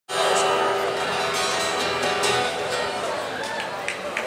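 Live rock band holding a sustained chord that slowly fades, with audience noise over it.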